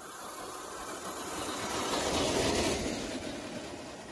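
Traxxas TRX-4 RC crawler driving past close by on loose dirt: the electric motor and geared drivetrain run with the tyres on the soil. It grows louder to a peak a little after halfway, then fades.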